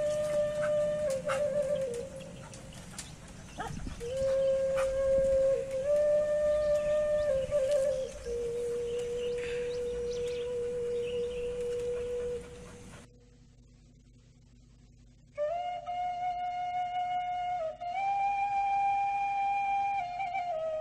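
Background music: a flute melody of long held notes stepping between a few pitches, with faint scattered clicks beneath it in the first part. About 13 seconds in it drops out for about two seconds and comes back at a higher pitch.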